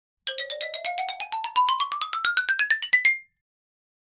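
Short intro jingle: a quick run of short notes, about ten a second, climbing steadily in pitch for about three seconds.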